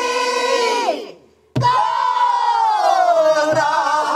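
A group of amateur voices singing pansori together in unison, accompanied by a buk barrel drum. A long held note ends about a second in, and after a brief pause a drum stroke brings the voices back on a long note that slides slowly downward. A lighter drum stroke falls near the end.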